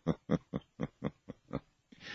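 A man laughing: a run of short, even "ha" bursts, about four a second, that stops shortly before the end.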